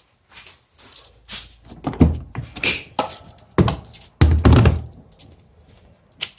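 Handling noise: a run of thuds and knocks as objects are picked up and moved about, with light sounds at first and the loudest knocks from about two seconds in.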